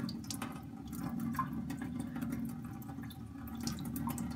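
Thin stream of tap water running onto a wet Imperia La Roccia finishing stone, with light strokes of a straight razor across the stone as it is honed.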